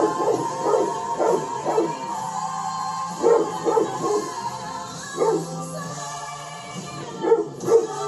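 A dog barking repeatedly in short bunches, about ten barks in all, the loudest two near the end, over music with held notes playing from a television.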